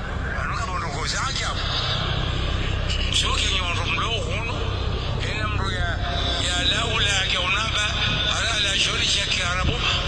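A person speaking over a steady low rumble.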